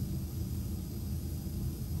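A steady low background hum with a faint hiss, in a pause between spoken sentences.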